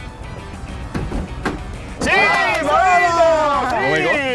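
Men shouting in celebration from about halfway through: long, loud yells that rise and fall in pitch. A couple of dull knocks come before them, from the volleyed football.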